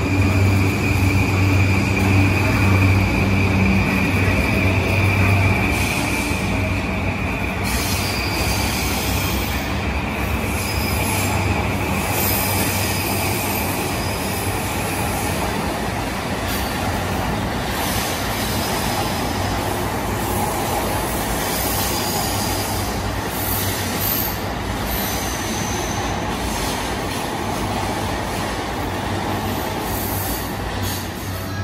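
E235 series 1000 electric train running along the platform, with continuous wheel-and-rail noise. A steady high-pitched whine runs through the first half and fades away about halfway through.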